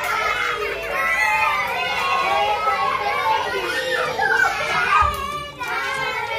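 Many children's voices chattering and calling out at once, overlapping with adult speech, in a large room.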